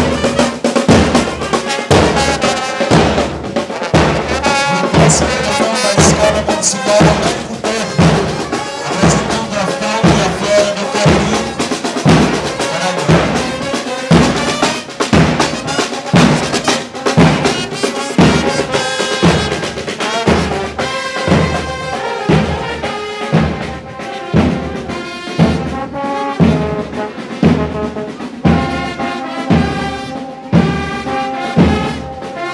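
Marching band playing a march: trumpets and trombones carry the tune over a steady beat of bass drums and snares, about two beats a second.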